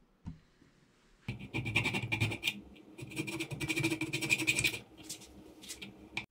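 Metal being scraped on a soldered copper-and-brass ring to clean off excess solder: a small click, then two long scraping runs and a few shorter strokes near the end.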